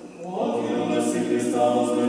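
Orthodox church choir singing a cappella liturgical chant, several voices holding steady chords together, coming in about half a second in.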